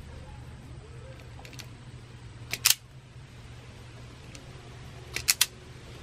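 Sharp snaps of a hand wire stripper closing on a wire being prepared for a splice: a quick pair of clicks about two and a half seconds in, then three quick clicks near the end, over a steady low hum.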